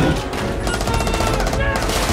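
A rapid burst of automatic gunfire lasting under a second, heard over a dense film-score music bed.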